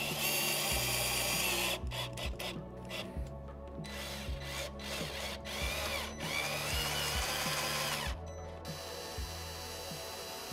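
Cordless drill driving screws into a metal pergola blind post, whirring in several runs that start and stop: a long one in the first two seconds, short ones to about four seconds in, and another long one from about six to eight seconds in.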